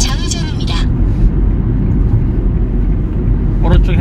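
Steady low rumble of engine and tyre noise inside a moving Hyundai car's cabin.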